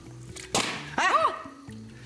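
A steam-filled aluminium drink can is plunged upside-down into cold water and implodes about half a second in: a sudden sharp crack with a hiss that fades quickly. The steam inside condenses, the pressure drops, and air pressure crushes the can.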